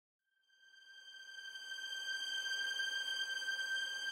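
Steady high-pitched electronic tone with a faint hiss beneath it, fading in from silence over the first two seconds and then holding at one pitch.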